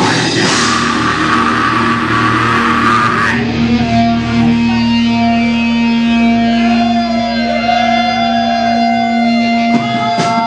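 Live rock band playing loud, with electric guitar out front. After about three seconds the dense full-band wash thins out, leaving long held guitar notes, with several bent notes later on.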